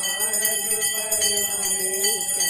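A small puja hand bell rung rapidly and without pause, with a voice chanting a devotional mantra in a slow, held sung line.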